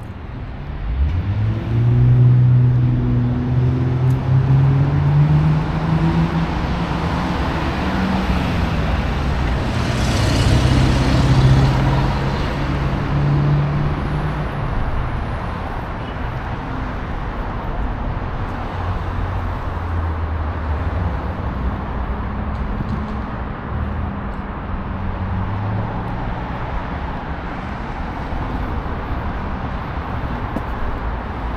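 Road traffic on a city avenue. A vehicle engine accelerates with rising pitch a second or two in, another vehicle passes close with a louder rush of tyres around ten to twelve seconds in, and then a steady hum of passing cars remains.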